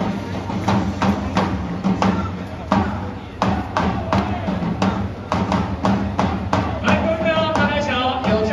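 Baseball stadium cheering music: a drum beating a steady rhythm of about two to three beats a second, with a chanted or played melody joining in near the end.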